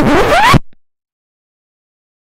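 An edited-in cartoon sound effect: a loud, rushing noise with a whistle rising sharply in pitch, lasting about half a second and cutting off abruptly.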